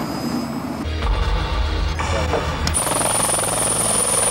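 A helicopter landing, its rotor chopping fast and steadily and its turbines giving a steady high whine, from a little under three seconds in. Background music runs underneath, and the first part is broken by short edited cuts.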